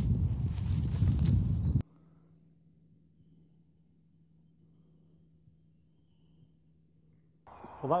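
Wind and handling noise rumbling on a handheld phone microphone over a steady high insect chirring. Under two seconds in it cuts off abruptly to near silence, with only a faint high whine left.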